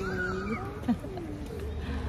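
A person's voice making a drawn-out, wordless vocal sound that rises and then falls in pitch over the first half-second, followed by a few shorter vocal sounds.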